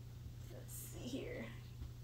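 Faint muttered, half-whispered speech from the lecturer, over a steady low hum.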